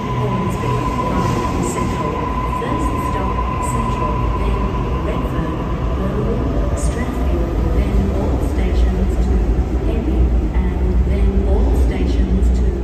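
Double-deck suburban electric train pulling out of an underground platform: low rumble and wheel noise build as it gathers speed. A steady high whine fades out over the first few seconds.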